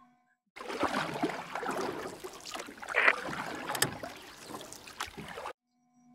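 A stretch of splashing, water-like noise that cuts in abruptly about half a second in and cuts off just as abruptly about five seconds later.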